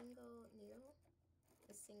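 Faint speech, a voice talking very quietly, with a short click at the start.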